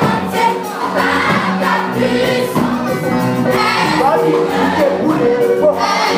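A choir of girls singing a gospel song together, led by a soloist singing into a microphone.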